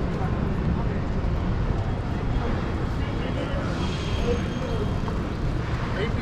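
Downtown street ambience: a steady low rumble of traffic with scattered voices of passers-by, and a faint high hiss with two thin steady tones from about three and a half to five seconds in.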